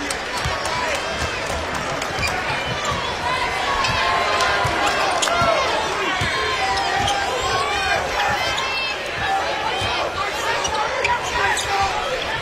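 Basketball dribbled on a hardwood court, with many short sneaker squeaks and a steady crowd murmur in a large arena.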